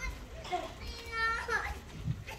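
Children's voices in a hall: short high-pitched calls and chatter without clear words, the loudest about a second in.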